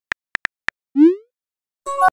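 Phone keyboard typing clicks, then a short rising swoop as the text message is sent, and a brief chime near the end.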